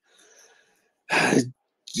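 A man sighing: a faint breath, then a short voiced sigh about a second in.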